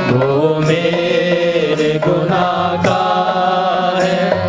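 A group singing a devotional hymn together to harmonium accompaniment, the harmonium's reeds holding a steady drone under the wavering voices. A few dholak strokes sound during it.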